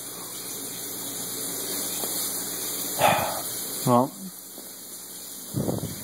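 Aquarium filter running: a steady low hum with an even high hiss of moving water. A short sharp noise cuts in about three seconds in, and another brief low one comes near the end.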